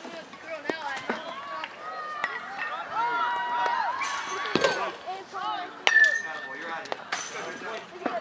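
Baseball batting practice: sharp knocks of balls being hit or striking the cage. About six seconds in, a bat strikes a ball with a ringing metallic ping that lasts about a second. Voices chatter in the background.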